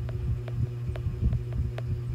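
Stylus tips tapping and stroking on a tablet's glass screen while writing, giving an uneven run of light clicks and soft thumps, about four to five a second, over a steady low hum.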